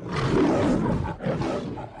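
Lion roaring: two loud roars with a short break a little over a second in.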